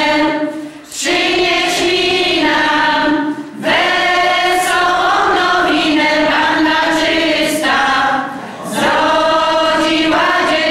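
Women's folk choir singing a Polish Christmas carol (kolęda) a cappella, in sustained phrases with short breaks for breath about a second in, midway, and near the end.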